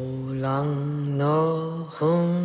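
Low male voice chanting in long, held notes on the soundtrack.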